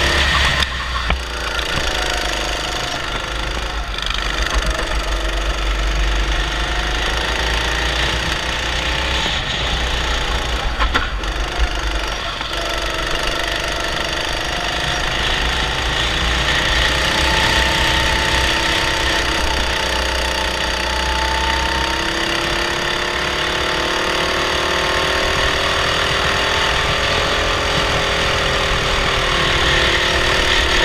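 Onboard sound of a racing kart's Honda 270cc single-cylinder four-stroke engine running under load. Its pitch falls and climbs again repeatedly as the driver lifts and reapplies throttle through the corners.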